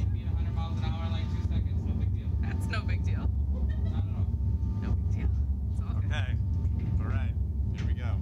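Steady low rumble, with short snatches of voices over it a few times.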